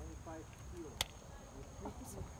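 Faint, distant voices over a low rumble of wind on the microphone, with one sharp click about a second in and a steady thin high tone.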